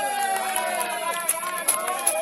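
Several voices shouting and calling out at once, some calls long and drawn out, as players call across a football pitch.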